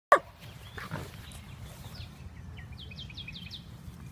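Basset hound puppies playing, with a short yelp about a second in and a quick run of about five high, falling squeaks near the end. A sharp click at the very start is the loudest sound.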